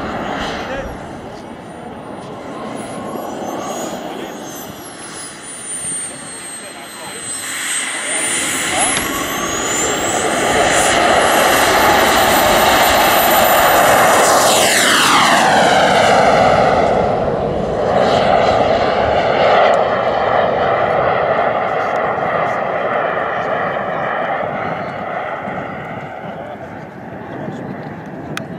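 Small jet turbine of a radio-controlled L-39 Albatros model jet running with a high whine. It grows much louder about eight seconds in for the take-off run. Its pitch drops sharply as it passes by around fifteen seconds, and then it fades slowly as the jet climbs away.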